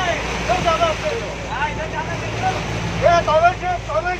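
Several people talking and calling out aboard a bus over the steady hum of its engine, with the rush and splash of floodwater around the vehicles. The voices are loudest about three seconds in.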